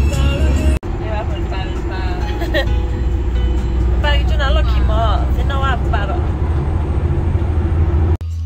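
Steady low road and engine rumble inside a moving passenger van, with a brief break about a second in. Music with a wavering voice plays over it.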